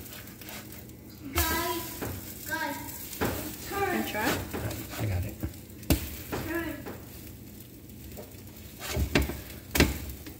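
French toast frying in a hot greasy pan, sizzling steadily, with a few sharp knocks around six seconds in and near the end.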